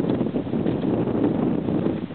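Wind blowing across the microphone, a loud steady rush that drowns out most other sound.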